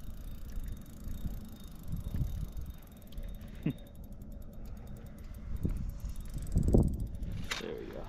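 Fishing reel being cranked, a fine steady ticking, as a walleye is brought up to the net, over a low rumble. A single loud thump comes near the end.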